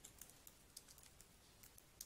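Faint typing on a computer keyboard: a run of light, irregular keystroke clicks.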